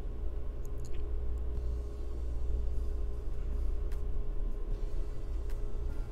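Steady low hum with a thin steady tone above it, broken by a few faint clicks.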